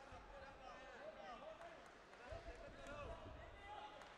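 Faint voices of an arena crowd, several people calling out over one another, over a low rumble.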